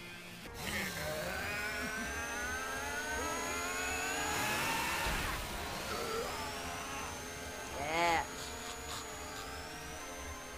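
Anime fight-scene soundtrack: music mixed with engine-like revving sound effects, with two long rising whines. A brief shout comes about eight seconds in.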